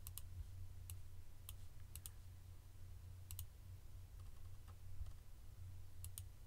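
Faint, scattered clicks of a computer mouse, a few single and paired clicks spaced about a second apart, over a low steady hum.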